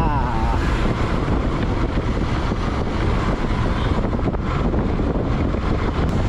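Motorcycle running steadily along a road, its engine noise mixed with wind rushing over the microphone.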